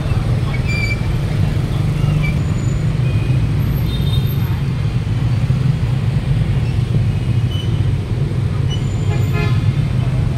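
Steady city traffic din of motorbikes and cars, with a vehicle horn sounding near the end.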